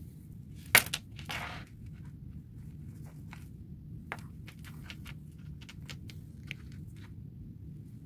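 Hand sewing: a headband of lace and fabric being turned and handled while a needle and thread are pulled through and tied off, making soft rustles and small ticks. There is one sharper click about a second in, over a low steady hum.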